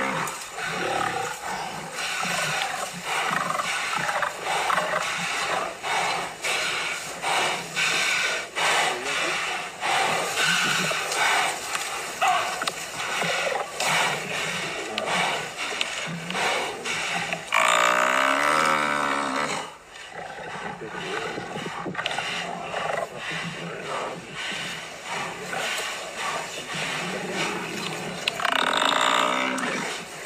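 Lions growling and roaring while attacking an African buffalo, a dense, continuous noise of snarls. About 18 seconds in, a long, drawn-out pitched call rises and falls for about two seconds, and a shorter one comes near the end.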